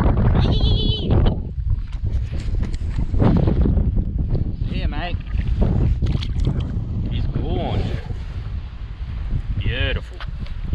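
Strong wind buffeting the microphone, heard as a steady low rumble, with a redfin perch splashing as it is released into the water about midway. Several short voice-like pitched sounds come over the top.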